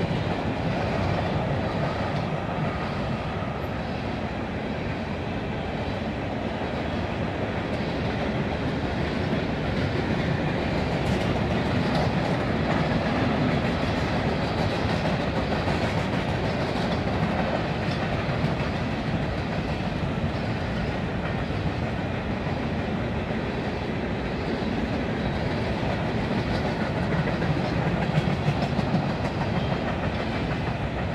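Freight train of covered hopper cars rolling steadily past, steel wheels running on the rails with occasional clicks over the joints.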